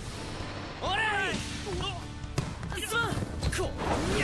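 Volleyball-match soundtrack of an anime episode: voices shout loudly twice, about a second in and again near three seconds, over background music, with a few sharp thuds in between.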